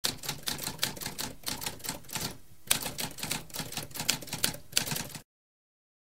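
Typewriter typing: a quick run of key strikes with a short pause about halfway, stopping a little after five seconds in.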